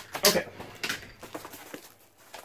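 Cardboard shipping box being handled just after it was cut open with a box cutter: a sharp scrape of cardboard about a quarter second in, then light scattered rustles and taps that die away.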